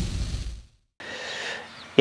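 Tail of a noisy title-card transition sound effect fading out over the first half second, followed by a moment of dead silence and then faint background until talking resumes.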